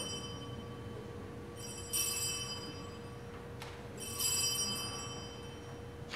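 Altar bells shaken twice, about two seconds apart, each a brief bright jingle of several small bells that rings on. This is the ringing that marks the elevation at the consecration of the Mass. A steady faint hum lies under it.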